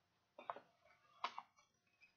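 Near silence: room tone, broken by two faint short sounds about half a second and a second and a quarter in.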